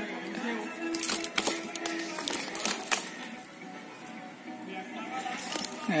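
Background music with held notes, over which come several sharp knocks in the first three seconds.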